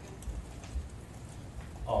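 Two soft low thumps within the first second, over steady low room rumble.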